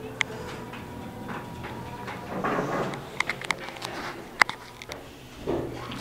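Glass elevator's doors closing and the car setting off: a low steady hum with a faint thin tone in the first couple of seconds, a soft rush, then several sharp clicks and knocks.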